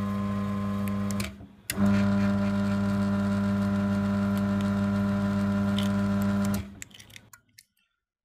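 Chamberlain garage door opener motor running with a steady hum, set going by the newly programmed remote, which shows the remote works. The hum cuts out about a second in, starts again half a second later, and stops about five seconds after that.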